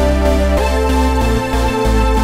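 Background music with a steady bass and held chords.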